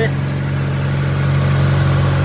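Fishing boat's engine running steadily with the boat under way, an even, unchanging low drone.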